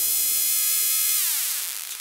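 Electronic dance track: a bright hissing noise sweep with ringing, evenly spaced overtones that glide down in pitch just past a second in, while the deep bass drops out and the sound fades away.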